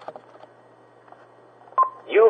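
AT&T answering machine starting message playback: faint hiss, then near the end a click and one short beep just before its recorded voice announces the messages.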